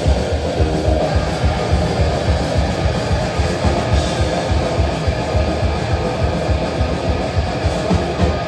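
Live speed metal band playing loud: distorted electric guitar and bass over a fast, even drum beat.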